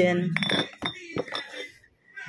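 Glass drink bottles clinking against each other in a cardboard box as one is lifted out, a few sharp clinks in the first second and a half.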